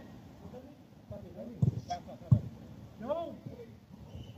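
Two sharp thuds of a football being struck, about two-thirds of a second apart midway through, with players' distant shouts across the pitch.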